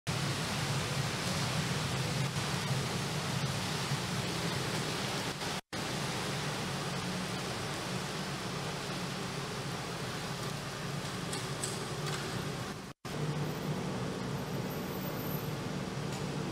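Steady hiss of rain falling on wet ground, with a low steady hum underneath. The sound drops out for an instant twice, about a third of the way in and again near the end.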